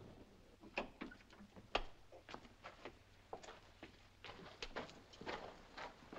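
Faint, irregular footsteps and light knocks on a path, with one louder knock about two seconds in.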